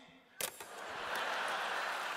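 A single sharp click about half a second in, then a live audience laughing and clapping, building up over about a second and holding.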